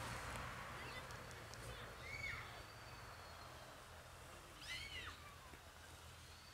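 Faint background hiss with two short distant bird calls, one about two seconds in and a doubled one about five seconds in.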